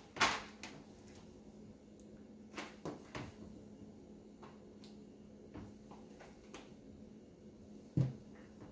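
Scattered light taps and clicks as slabs of cut comb honey are lifted and set down on stainless steel wire cooling racks, the sharpest tap about a third of a second in and a few more around three seconds in. A faint steady hum runs underneath.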